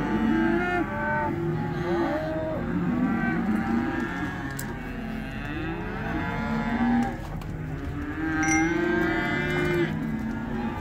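Many cattle mooing at once, their long calls overlapping without a break.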